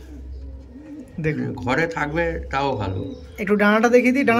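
Domestic pigeon cooing in low, rolling phrases, about a second in and again near the end, over a low steady hum.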